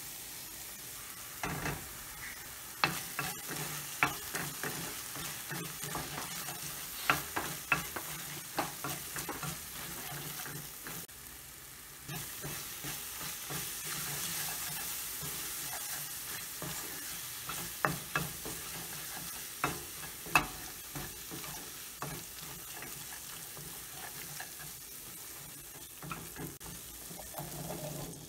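Tomato and onion masala sizzling in a stainless steel pan as it is stirred, with frequent sharp clicks of the spoon striking the pan.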